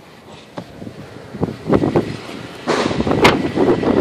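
Knocks and rustling from a handheld phone being moved about inside a minivan, then, from near the three-second mark, wind blowing on the microphone.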